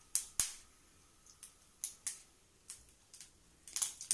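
About ten sharp clicks and pops at uneven intervals, the loudest two in the first half-second and a quick cluster just before the end.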